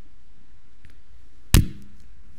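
A single sharp knock about one and a half seconds in, over quiet room tone.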